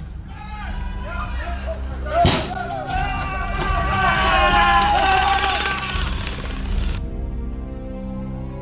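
A group of people yelling and shouting over one another, loudest in the middle, over background music with a steady low drone. A single sharp bang about two seconds in.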